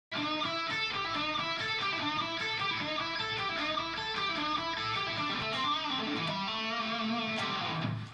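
Electric guitar playing a quick run of notes over and over, a cycling lick in the A minor pentatonic scale.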